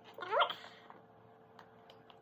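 A single short vocal whine rising in pitch, about half a second long, near the start.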